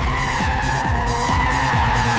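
AI-generated sound of a car's tyres squealing as it slides through a turn, one long squeal that sinks slightly in pitch, over music with a low pulsing beat.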